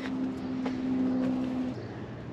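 A steady, low mechanical hum from a motor, which shifts to a lower note near the end.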